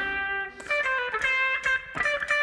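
Electric guitar through a tube amp playing a short single-note lead phrase: about half a dozen picked notes, each ringing into the next.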